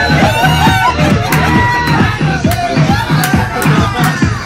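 Loud dance music with a steady, driving beat and a singing voice, played through a PA loudspeaker on a tripod stand.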